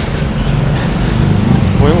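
City street traffic: a low rumble of car and motorbike engines that swells about one and a half seconds in as a vehicle passes close.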